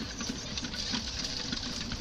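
A steady, rapid mechanical clatter.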